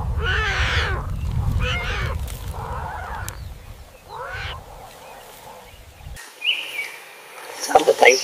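Four short animal calls with bending pitch over a low rumble; the rumble stops abruptly about six seconds in, followed by a short high note and a brief burst of sound near the end.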